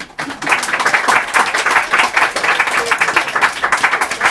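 Audience applauding at the end of an acoustic song, many hands clapping irregularly, starting as the last note dies away.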